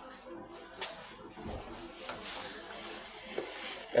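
Kangaroo leather lace drawn through a vise-mounted lace trimmer set to finishing width: a faint rubbing hiss of the lace sliding past the blade, with a few light clicks in the first half.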